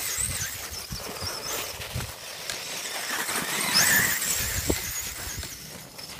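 Axial Wraith RC truck's electric motor whining, its pitch wavering up and down with the throttle and rising to its loudest about four seconds in, while its paddle tires churn through snow with low, uneven scuffs and thumps.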